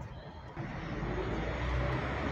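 A car approaching on the street, its engine and tyre noise rising steadily from about half a second in.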